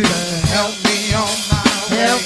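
A group of voices singing a gospel song, held notes sliding in pitch, over a drum kit keeping a steady beat.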